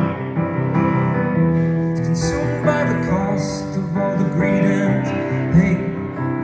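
Piano played live on a digital keyboard: full, rhythmic chords in the low and middle register with a melody on top.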